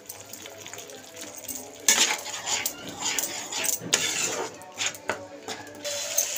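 Metal spatula scraping and clinking against a kadhai as a thick masala and yogurt mixture is stirred constantly so the yogurt does not split before it boils. The stirring strokes begin about two seconds in, as a run of sharp clicks and scrapes.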